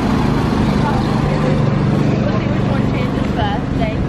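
Street traffic at a city intersection: a vehicle's engine running steadily as cars drive through the crossing, swelling in the middle. Brief voices are heard near the end.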